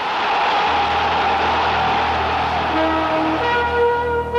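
Opening theme music of a TV sports programme: a swelling rush of sound over a low steady drone, with held notes entering near the end.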